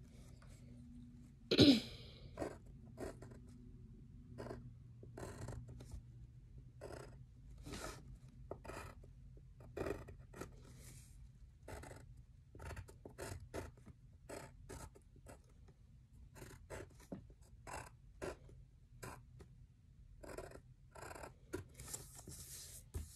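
Graphite pencil drawing on paper in short scratchy strokes, one or two a second, with a brief louder sound about two seconds in.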